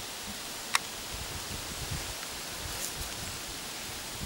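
Steady outdoor background hiss with light rustling, and one sharp click a little under a second in.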